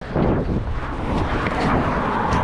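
Wind buffeting the microphone of a body-worn camera, a continuous low rumble, with the rustle and knocking of someone climbing over a wooden gate.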